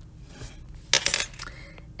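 A stylus scratching on a tablet's glass screen in one short, loud stroke about a second in, as a point on the list is crossed out.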